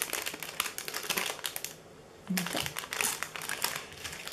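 Clear plastic packaging crinkling as it is handled: a run of quick crackles and rustles, with a short pause near the middle.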